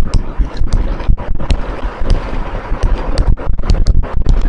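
Irregular clicks and knocks, several a second, over a rustling rumble.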